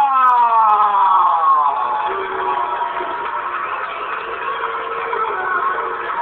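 A ring announcer's drawn-out call of a fighter's name, held for about two seconds and sliding down in pitch, then an arena crowd cheering.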